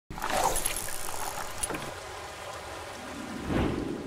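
A steady rushing noise that starts suddenly and swells shortly before the end, laid under an animated logo intro.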